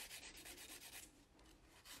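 Faint, quick rasping of a nail file stroked back and forth across the free edge of a bare natural fingernail, filing its shape. The strokes grow weaker about halfway through.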